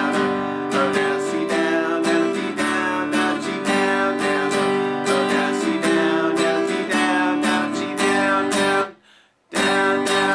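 Acoustic guitar strummed in a steady down-down-up rhythm on open G and C chords. About nine seconds in the chord is cut off sharply, then one last strum rings briefly.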